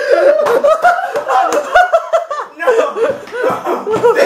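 A young man laughing loudly in quick repeated bursts.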